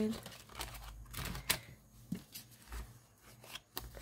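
Paper envelope and dollar bills being handled, rustling softly, with a few light clicks as coins are put inside.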